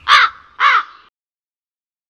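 A crow cawing twice, two short harsh caws a little over half a second apart.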